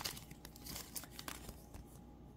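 Faint rustle and soft scattered clicks of Panini Prizm trading cards being handled in the fingers.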